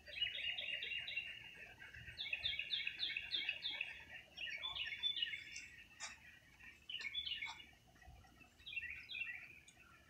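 High-pitched chirping from small animals: quick rows of short chirps, about four a second, coming in groups with short lulls between. Two sharp clicks sound about six and seven seconds in.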